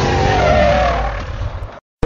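Motorcycle engine revving as the bike pulls away, a loud rumble with a wavering tone over it. It fades and then cuts off abruptly near the end.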